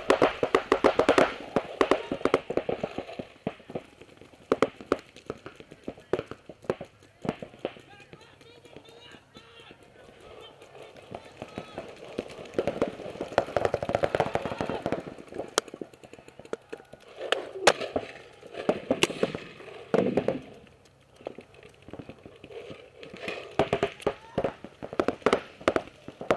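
Paintball markers firing in fast strings of sharp shots, loudest near the start and again around the middle, with indistinct shouting voices between the shots.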